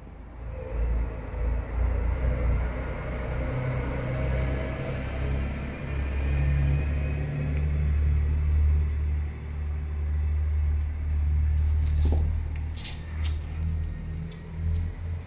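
A Shiba Inu growling low and steadily over a toy, in long continuous stretches with brief breaks for breath. A few small clicks come near the end.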